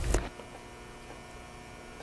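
Faint, steady electrical hum made of several fixed tones at once, after a woman's voice trails off in the first moment.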